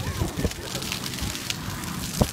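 Splash-pad fountain jets spattering water onto wet paving, an uneven patter of drops over a steady hiss.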